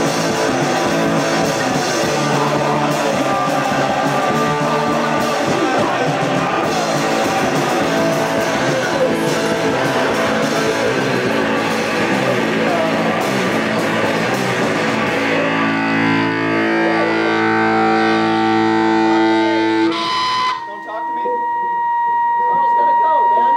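Live rock band with distorted electric guitar, bass and drums playing hard; about 15 seconds in the drums drop out and the guitars and bass ring out on held chords. The song stops suddenly near the end, leaving a steady high-pitched tone from the amplifiers.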